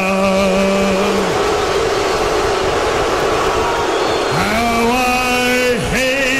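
A man singing long, drawn-out notes into a handheld microphone over an arena PA, one note held for over a second at the start. Between phrases, for a few seconds in the middle, a large crowd's noise fills in, and then the singing resumes near the end.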